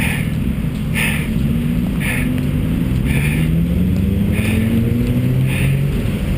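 Busy city road traffic rumbling, with a vehicle's engine rising steadily in pitch as it accelerates through the middle. Soft swishes come about once a second over it.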